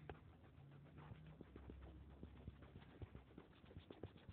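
Near silence with faint, irregular light taps of a stylus on a tablet screen as handwriting is erased.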